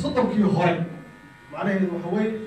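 A person's voice in two short phrases, breaking off about a second in and resuming about half a second later.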